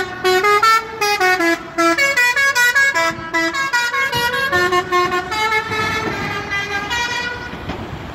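Musical air horn on a tanker truck playing a quick tune of short, stepped notes. Later the notes lengthen and the tune fades as the truck drives away.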